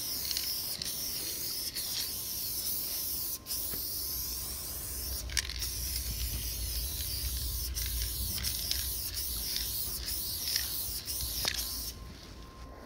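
Aerosol spray-paint can spraying paint onto a wall: a steady high hiss broken by brief pauses between strokes.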